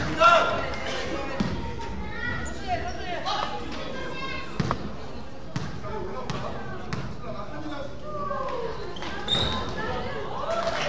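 A basketball bouncing on an indoor court floor a handful of times at uneven intervals, among the voices of players and spectators calling out in the hall.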